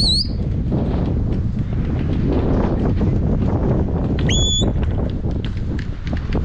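Steady low rumbling of wind on the microphone and handling noise as the camera is carried outdoors. Two short, high whistle notes cut through it, one right at the start and one about four seconds in; each sweeps up quickly and then holds.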